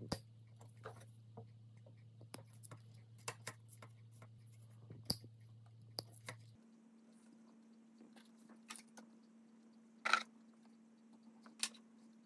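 Sparse faint clicks and snips of small jewellery hand tools: cutters cutting a fine sterling silver chain, then pliers handling small jump rings, over a low steady hum.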